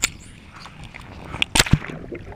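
A GoPro camera cast out on a fishing line as a bobber flies through the air, then hits the water with a short cluster of sharp splashing impacts about three-quarters of the way in.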